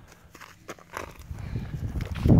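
Footsteps scuffing over dry, stony ground, with soft irregular knocks from the phone being handled. Nearly quiet at first; the steps start about half a second in.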